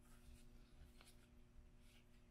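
Near silence: room tone with a faint steady hum and one faint tick about a second in.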